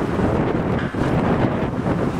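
Wind buffeting the camera microphone, a steady rumbling rush.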